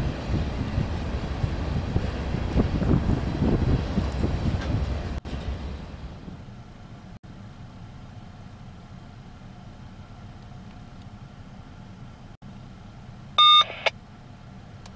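Open-top freight cars rolling past on the rails with a low, heavy rumble that drops off after about five seconds to a faint, steady background as the train moves away. Near the end a short, loud electronic beep sounds once.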